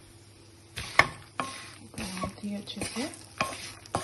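Wooden spatula stirring fox nuts, peanuts and poha in a wok, with sharp scrapes against the pan over a light oil sizzle. The strokes begin about a second in and come every half second or so.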